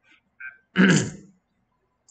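A person clearing their throat once, a short rough burst about a second in, after a faint small sound just before it.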